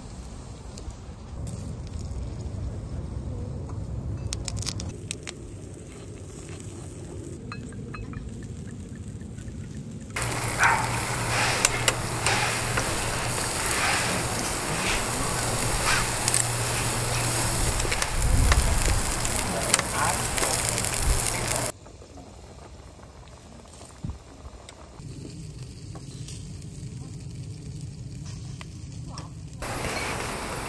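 Meat sizzling and popping on a grill grate over an open fire. It is loudest and densest from about ten seconds in, when pork belly is on the grate, and drops off sharply about twenty-two seconds in to quieter crackling and occasional clicks.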